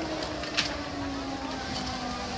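Large structure fire burning, with a steady rushing noise and sharp pops, the loudest about half a second in. Under it, a low pitched tone slowly slides down in pitch throughout.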